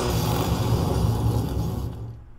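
Pinball sound effect of a laboratory explosion, played back through speakers: a loud, deep burst of noise that fades out near the end.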